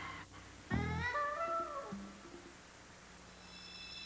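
A single pitched cry or note, about three quarters of a second in, that slides upward and holds for about a second. A faint low steady tone follows.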